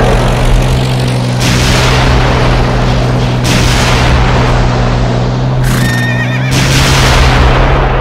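Battlefield sound effects: loud rolling blasts of shellfire coming in surges every couple of seconds over a steady low hum, with a horse whinnying briefly about six seconds in.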